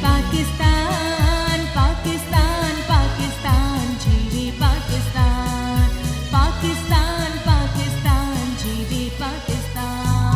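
Live band playing a South Asian pop song: a woman singing an ornamented melody over keyboard and electronic drums with a steady beat.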